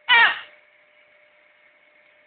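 Blue-and-gold macaw giving one short call of about half a second, falling in pitch, at the start. A faint steady hum carries on underneath.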